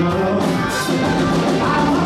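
Live rock band playing: Hammond B3 organ, electric guitar, bass guitar and drum kit, with a male lead singer's voice over them.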